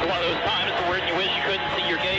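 A race car driver's voice over the two-way team radio, thin and cut off at the top as radio speech is, with background music underneath.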